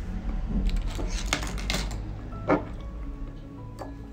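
A wooden stick stirring a thick cream in a small plastic beaker, giving a few clicks and scrapes against the sides, over soft background music.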